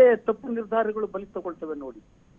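Speech only: a man talking, his voice thin and cut off at the top, as over a telephone line.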